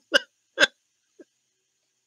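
A woman's laughter trailing off in three short breathy bursts, the last one faint.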